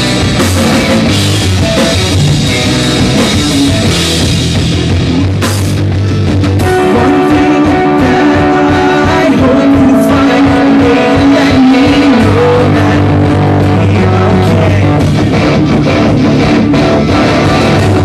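Live rock band playing loudly on electric guitars, electric bass and drum kit. About six and a half seconds in the heavy low end drops out and long held notes carry the song, then the full band comes back in around twelve seconds in.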